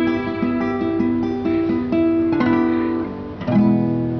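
Guitar and bowed cello playing an instrumental piece together, moving through a regular two-note figure. About three and a half seconds in, a new chord is struck and left to ring, slowly fading.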